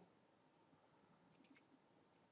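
Near silence: room tone, with a few faint computer mouse clicks near the middle.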